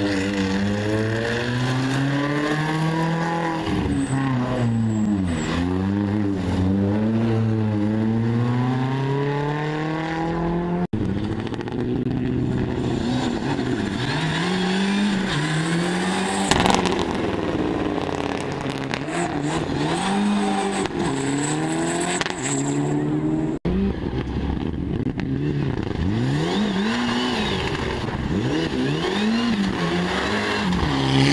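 Rally cars on a gravel stage, their engines revving hard and dropping back with each gear change and lift, in three separate passes joined by abrupt cuts. The first car is a Ford Fiesta, and the last is a Mitsubishi Lancer Evolution.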